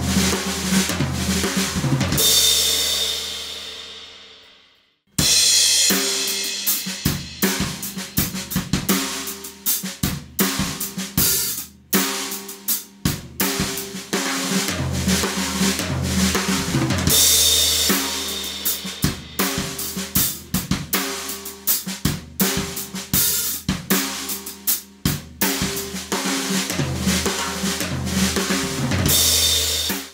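Acoustic drum kit: a fill ends on a cymbal and bass drum hit that rings out and fades over about four seconds. After a brief silence, a straight groove with a six-stroke roll cycled in 32nd notes across snare, toms, kick and cymbals, with cymbal crashes about halfway through and near the end.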